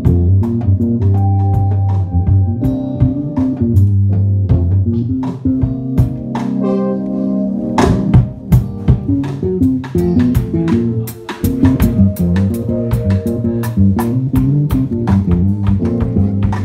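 A live band playing: a drum kit with frequent cymbal and drum hits over sustained bass notes and guitar.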